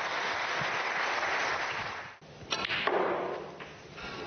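Snooker audience applauding a good pot for about two seconds, then a sharp click of snooker balls being struck, with more applause-like noise after it.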